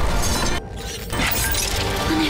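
A loud crash-like sound effect over dramatic film-score music. It cuts off abruptly about half a second in, and the music comes back shortly after.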